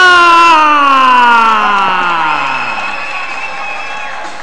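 A ring announcer's long, drawn-out call of the winner's surname, "Meraz", held for several seconds and sliding slowly down in pitch until it fades out about three seconds in. A crowd cheers underneath.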